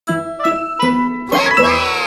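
Short musical logo jingle for a children's cartoon: four quick pitched notes, the last opening into a shimmering cluster of tones that glide downward.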